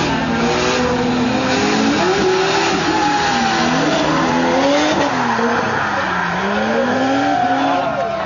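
Two drift cars' engines revving up and down repeatedly as they slide through the course in tandem, over a steady noisy hiss of tyres skidding on the wet track.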